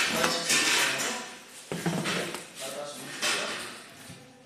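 Metallic clinking and scraping from handling a steel drum lid, mixed with a man's brief indistinct talk.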